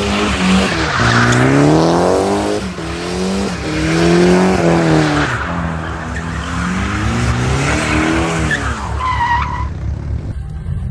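Car engine revving up and down again and again, with tyres squealing and skidding under it. A short, high, steady squeal comes near the end.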